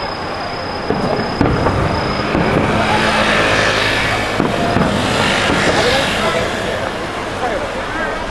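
Crowd chatter on a street, with a motor vehicle passing close by: its engine and tyre noise swells and fades over about four seconds in the middle.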